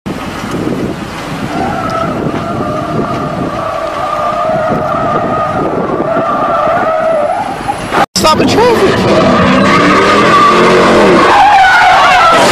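Tyres squealing in a steady, sustained screech as a Dodge Challenger slides sideways. About eight seconds in the sound cuts out briefly, then a louder stretch follows with rising and falling engine and tyre noise and voices.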